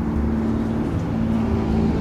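A steady low mechanical hum with a few held low tones.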